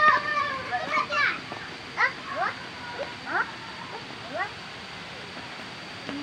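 Children's high-pitched voices: a shrill call right at the start, then a string of short rising squeals and calls that die away after about four and a half seconds.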